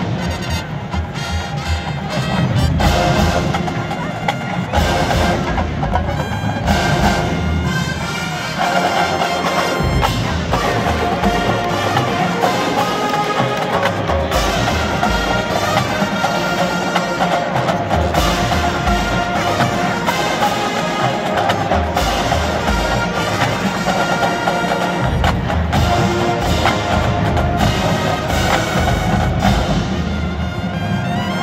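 Marching band playing live: massed brass over a drumline, with frequent sharp drum and percussion hits driving the music.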